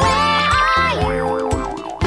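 Bouncy children's song backing music with a steady beat. About a second in, a wobbling cartoon sound effect warbles up and down in pitch for most of a second.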